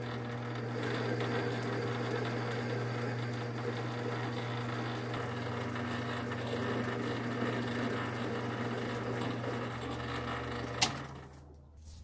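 Metal lathe running steadily while a narrow form tool plunges a slot into a spinning tool-steel part, a motor hum with the rough sound of the cut over it. Near the end it cuts off after a sharp click.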